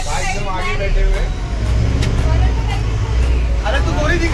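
Bus engine and road rumble heard from inside the passenger cabin, a deep steady drone that grows stronger about a second in, with passengers' voices over it.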